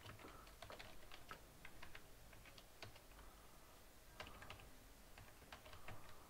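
Faint typing on a computer keyboard: scattered, irregular keystrokes.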